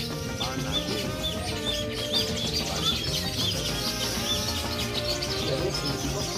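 A bird chirping over and over in short arched calls, about three a second, over a dense background.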